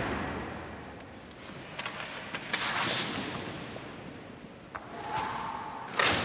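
Cotton practice uniforms and hakama rustling and bare feet moving on a dojo mat as two practitioners get up from a pin and step apart, with one louder swish about two and a half seconds in and a few light taps, over steady tape hiss.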